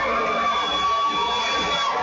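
Arena crowd cheering and shouting, with one long held call rising above the noise for most of the moment.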